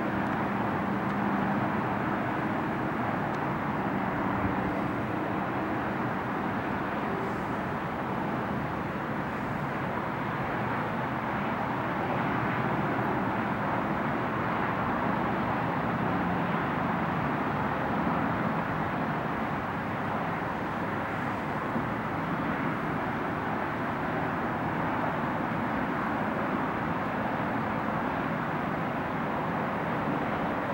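Steady distant drone of aircraft: a faint low hum over an even outdoor rush of noise.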